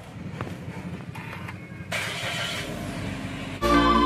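Suzuki XL7's 1.5-litre four-cylinder engine running, heard from inside the cabin as a low rumble that grows louder about two seconds in. Electronic intro music comes in just before the end.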